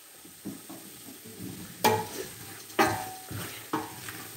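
Soft sizzle of onions and cornstarch cooking in a stainless steel stockpot, with three sharp clanks of metal against the pot about a second apart from about two seconds in.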